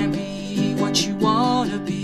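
Ashbury baritone ukulele strummed in a steady chord rhythm, with a voice singing a short bending phrase over it about halfway through.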